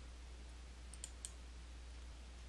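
A few faint computer mouse clicks about a second in, clicking the stack arrow to collapse an expanded photo stack, over a low steady hum.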